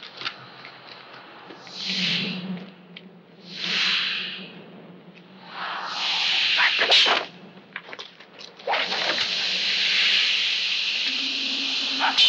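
Hissing whooshes from a fight scene's soundtrack: two short swells, a longer one with a sharp crack about seven seconds in, then a steady hiss lasting the last few seconds.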